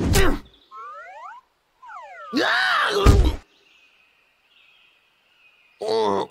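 Cartoon slapstick sound effects: a hit at the start, a quick run of rising whistle-like glides and then falling ones, then a cry with a heavy thump about three seconds in.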